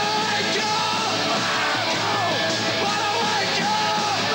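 Live punk rock: a band playing loud, distorted guitar-driven music with shouted vocals over it.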